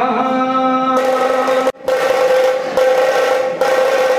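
Male voices singing an aarti, holding long steady notes, the second note higher than the first. The sound cuts out briefly a little under two seconds in.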